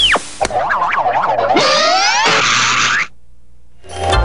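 Cartoon sound effects: a springy, wobbling boing for about a second, then a fast rising sweep with a hissy tail that cuts off sharply about three seconds in.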